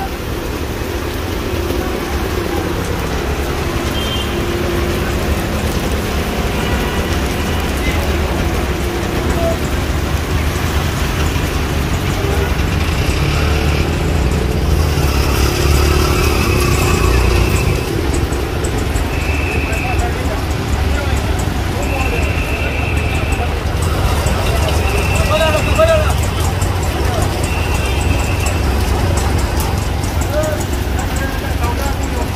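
Heavy rain falling on a busy street, a steady hiss over the low rumble of auto-rickshaw and car traffic. Several short high beeps sound at uneven intervals in the second half.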